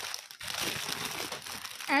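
Clear plastic packaging crinkling as it is handled.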